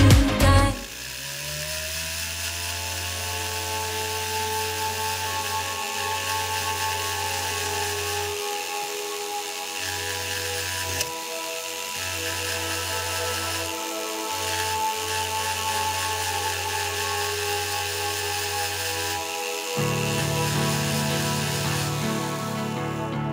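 Rotary handpiece spinning a small burr against 18k yellow gold around pavé-set diamonds: a steady whine that rises in pitch as it spins up about a second in. The low hum beneath it drops out briefly a few times.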